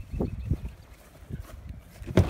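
Footsteps on grass: a few soft, irregular low thuds while walking.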